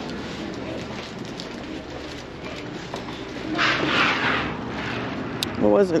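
Footsteps and movement noise of someone walking out through a door into the open, with a short, louder rustle a little past the middle and a couple of sharp clicks near the end.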